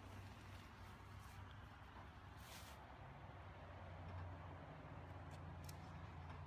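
Near silence: faint outdoor background with a steady low hum, a brief soft rustle about two and a half seconds in and a few faint ticks near the end.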